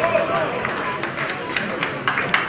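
Football match sound from the pitch: players' short shouts and calls, with several sharp knocks about one and a half seconds in.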